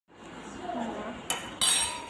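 A glass mixing bowl being knocked: a light tap, then a sharp clink that rings briefly.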